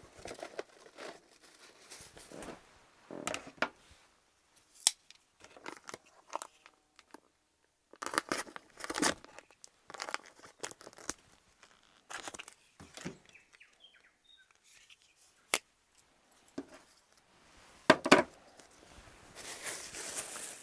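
Plastic food packaging crinkling and tearing in irregular bursts as a bacon packet is opened and handled, with a few sharp clicks.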